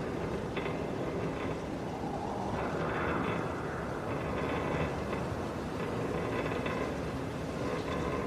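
Quiet, steady rumbling noise with faint high tones over it, a recorded ambience at the start of a song rather than the music itself.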